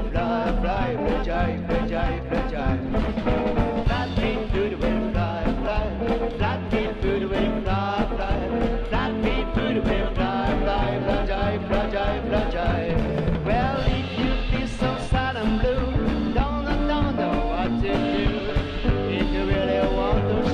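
A live band playing an upbeat rock-and-roll number on a drum kit, upright double bass and hollow-body electric guitar, with a man singing lead.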